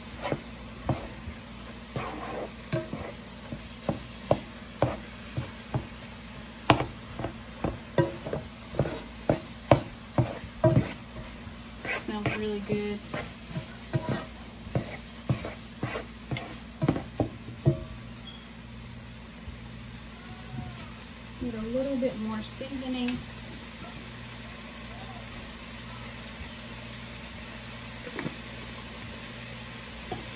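A utensil knocking and scraping against a large pot as ground beef is stirred and broken up, in quick irregular strokes that stop about eighteen seconds in. A steady low hum runs underneath.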